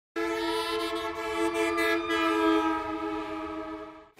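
Opening music sting: a held chord of several tones, one of them gliding slightly upward, slowly fading out.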